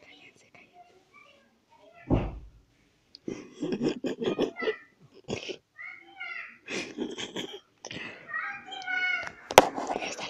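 Indistinct voices in short broken bursts, with one dull thump about two seconds in and a sharp click near the end.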